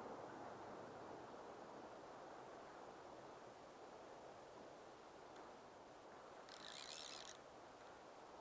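Near silence: a faint, steady rush of river current, with a brief high buzz about six and a half seconds in.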